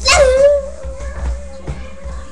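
A boy's voice holding one long sung or howled note: it starts loud with a quick dip in pitch, then stays steady for almost two seconds.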